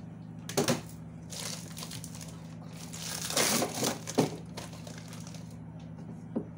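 Plastic bags of frozen food rustling and crinkling as they are handled and shifted inside a freezer, in several short bursts, the longest a little past halfway.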